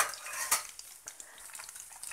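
Batter-coated mushroom pieces deep-frying in hot oil, a steady crackling sizzle. Two sharp clicks cut through it: the louder at the start, another about half a second in.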